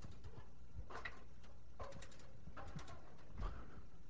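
Faint creaks and knocks from an aluminium stepladder as someone climbs down it, four short sounds about a second apart.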